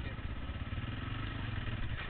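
Dirt bike engine running steadily as the bike rides into a rocky creek crossing, with water splashing under the front wheel near the end.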